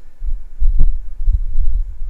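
Low, loud rumbling and thumping on the microphone, with a faint click about three quarters of a second in.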